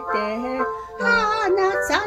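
A woman singing a Japanese pop ballad in a sustained, held line, over steady held electric keyboard chords.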